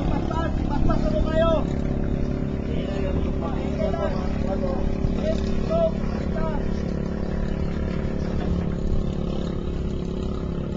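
Boat engine running steadily with a constant low hum. Voices call out over it through the first several seconds, then only the engine is left.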